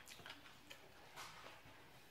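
Near silence broken by a few faint ticks and a soft scrape about a second in: a spoon and fork working food on a plate.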